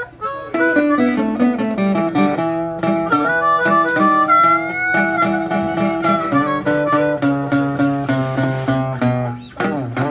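A harmonica and an acoustic guitar playing together, the harmonica holding and bending notes over the strummed guitar. The music drops briefly just before the end, then picks up again.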